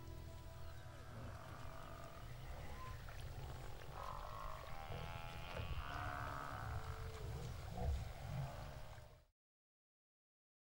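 Outdoor ambience with a steady low rumble and several short animal calls from about four seconds in, and a louder low thump near eight seconds. The sound cuts off just after nine seconds.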